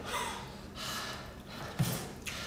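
A man breathing out hard through his mouth: two long, breathy puffs, then a short voiced sound near the end.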